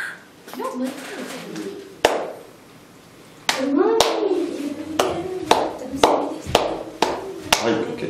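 Hand claps keeping time for a dance rehearsal: a single clap about two seconds in, then steady claps two a second, with a voice over them.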